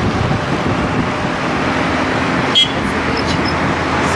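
Steady road and traffic noise heard from a moving car: engines and tyres of the car and of cars alongside, with one short sharp sound about two and a half seconds in.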